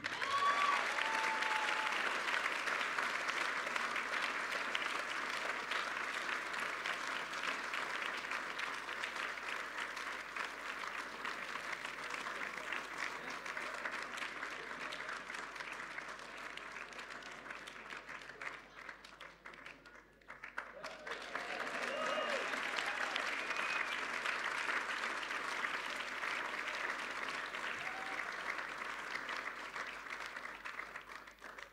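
Audience applauding. The clapping thins out about twenty seconds in, then rises again.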